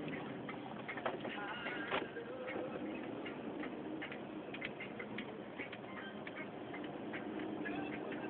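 Steady road noise inside a moving car, with scattered faint clicks and ticks at irregular intervals.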